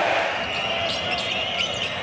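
Basketball arena ambience: steady crowd noise with a few faint high squeaks.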